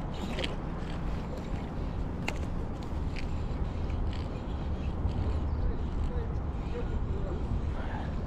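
Daiwa Alphas Air TW baitcasting reel being wound in against a small hooked fish, with a few faint clicks, under a steady rushing noise that is the loudest sound.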